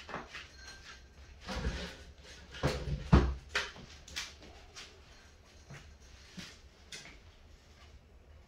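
A series of handling knocks and rustles, the loudest about three seconds in, as wires and plastic wire nuts are worked up into a ceiling fan's light kit housing; the knocks thin out to a few light clicks in the second half.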